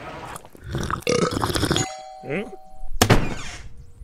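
Cartoon sound effects and wordless mumbling and vocal noises from an animated character, then a single sharp hit about three seconds in.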